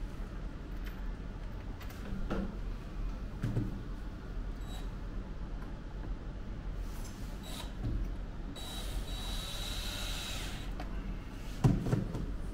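Cordless drill running for about two seconds near the end, driving a fastener into a terrarium's top frame, over a steady low hum. A few soft knocks of handling come before it, and a sharper knock just before the end.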